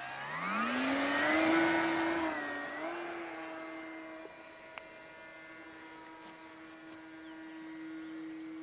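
Condor Magic EVO 4 RC motor glider's motor and propeller spooling up to a steady whine on a hand launch, the pitch rising over the first second or so, then fading as the glider climbs away. Crickets chirp steadily underneath.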